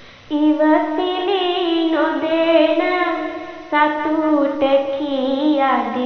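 A girl singing Sinhala kavi (traditional verse) unaccompanied in a slow, ornamented chant, her voice wavering and gliding within each phrase. She takes up a new phrase about a third of a second in, with brief breaks for breath near four and five seconds in.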